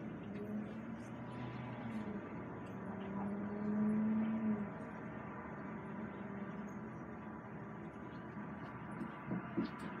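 Steady engine hum inside an idling bus waiting in traffic. A low tone swells louder for about a second and a half midway, and a couple of short knocks come near the end.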